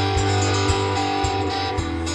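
Steel-string acoustic guitar played without singing, with notes ringing over a low thump that recurs about twice a second.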